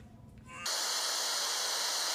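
TV static sound effect: a loud, even hiss that cuts in abruptly about two-thirds of a second in, after faint room tone.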